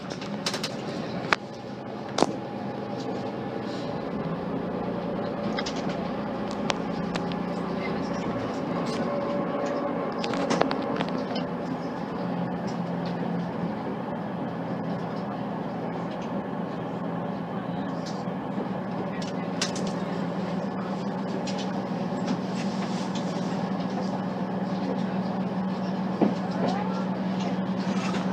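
Class 185 diesel multiple unit heard from inside the carriage while under way: its underfloor Cummins diesel engine gives a steady low hum, with running noise and occasional sharp clicks from the wheels and track.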